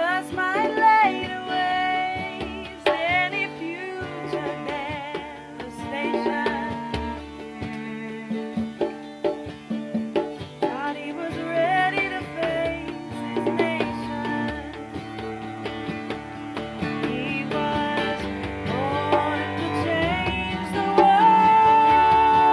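Live acoustic folk song: a woman singing with vibrato over acoustic guitar, hand drum and cello. It swells near the end to a loud, long held high note.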